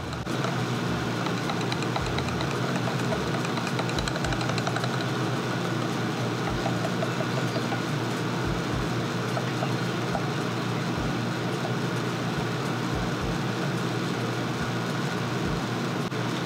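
Steady hum and hiss of background noise, with faint quick ticking of a small plastic whisk stirring oil in a plastic cup in patches.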